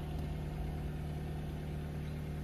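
An engine idling steadily, a low even hum with no change in pitch.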